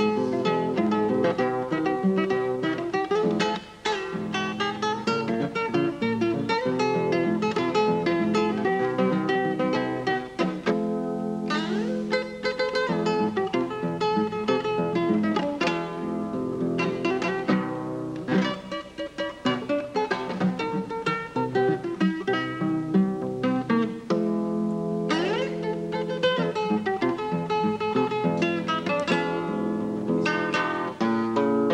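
Solo acoustic guitar played fingerstyle, with plucked melody and chords over a bass line, in the player's own unconventional tuning. Twice the hand slides quickly up the neck, a little over a third of the way in and again near the end.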